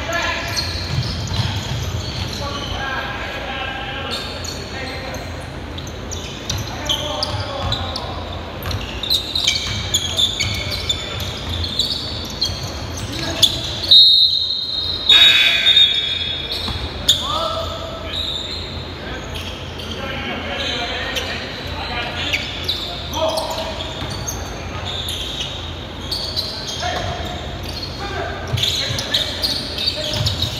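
Indoor basketball game on a hardwood gym floor: the ball bouncing, sneakers squeaking and players calling out in an echoing hall. A referee's whistle blows once, about halfway through, stopping play.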